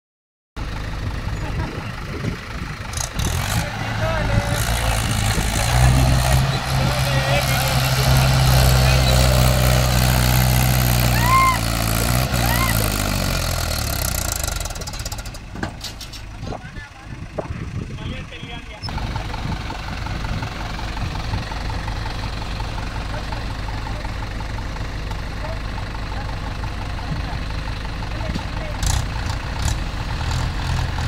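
Mahindra 475 DI tractor's diesel engine working under load as it hauls a loaded trolley up out of a dug trench. The engine note is strong at first, then drops in pitch about halfway through, and settles into a steady run for the rest.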